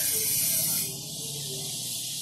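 Steady hiss of background noise with no speech. It drops slightly in level about a second in.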